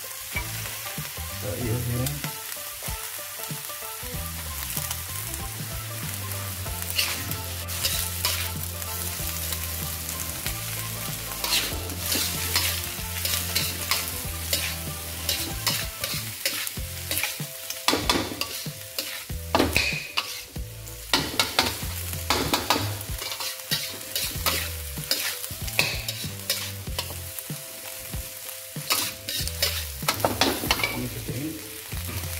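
Stir-frying in a steel wok: food sizzling steadily in hot oil while a metal wok spatula scrapes and clanks against the pan. The scraping strokes come more often in the second half.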